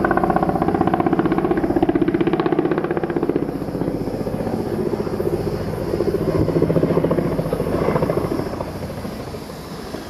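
An engine running with a fast, even beat, loud at first and fading toward the end.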